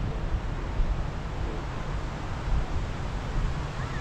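Wind buffeting the microphone: a steady low rumble over a noisy hiss, with brief stronger gusts about a second in and again past the middle.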